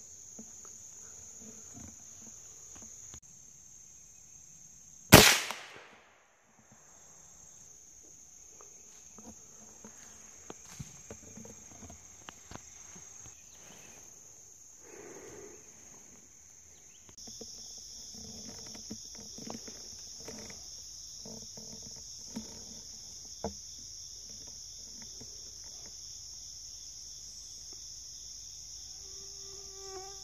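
A single sharp gunshot from a scoped hunting rifle about five seconds in, by far the loudest sound, over a steady high-pitched insect chorus. Scattered faint clicks and rustles follow.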